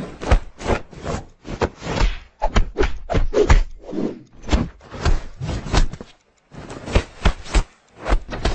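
Rubbing and scraping of a hand over a cat's fur as it strokes and pats the cat, in quick irregular strokes several times a second, with a short pause about six seconds in.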